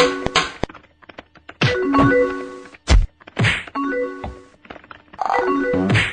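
Cartoon fight sound effects: a rapid series of thuds and whacks in several bursts, with short ringing chime-like tones sounding about four times among them.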